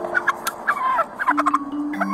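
A turkey gobbling in several quick rattling bursts, over background music with long held low notes.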